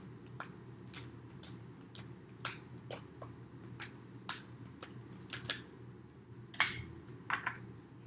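Deck of tarot cards being shuffled by hand: a string of light, irregular card clicks and snaps, one louder snap about six and a half seconds in, over a low steady room hum.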